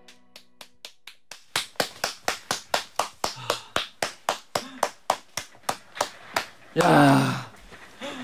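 Hand clapping in a steady rhythm of about four claps a second, with a few scattered claps that build into it as the last sung note dies away, marking the end of a live song. Near the end a short vocal exclamation cuts across the claps.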